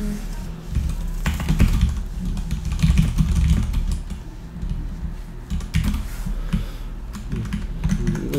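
Typing on a computer keyboard: irregular runs of key clicks as a sentence is typed.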